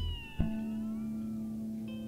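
Instrumental music: a held bass note gives way to a new bass note struck about half a second in and held. Above it, high tones bend in pitch, and a new set of high tones enters near the end.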